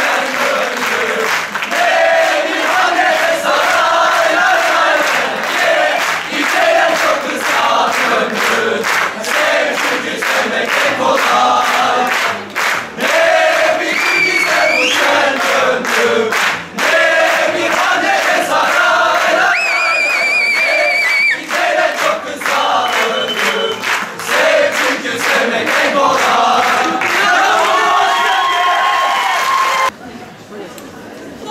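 A hall audience clapping in time and shouting along with a horon line dance on stage, a dense, steady beat of claps under a mass of voices. Whistling cuts through about two-thirds of the way in.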